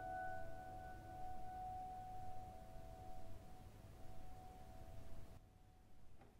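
Upright piano's last note, struck just before, ringing on as one held tone and slowly fading until it dies away near the end.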